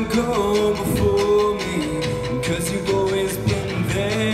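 Live band music: a male lead singer sings a verse of a song over guitar and band accompaniment, holding long notes and gliding between them.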